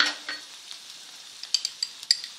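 Rice and onions frying in a nonstick pan on a gas stove, with a faint steady sizzle. A sharp knock comes at the start, and a quick run of small clicks follows about a second and a half in.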